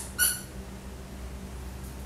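A dog's squeaky toy squeaks once, briefly, about a quarter second in, as a toy poodle bites it. A faint click comes just before the squeak.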